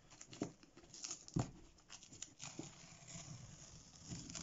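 Fingers picking at and peeling sticky paper framing tape off the edge of watercolour paper: faint, irregular scratches, crinkles and small clicks.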